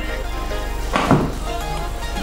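A cardboard laptop box being pulled open, with a single short knock or scrape from the lid about a second in, over steady background music.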